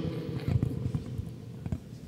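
A pause in a speech: the last words fade in a reverberant stone hall, with a scatter of soft, irregular low knocks and bumps.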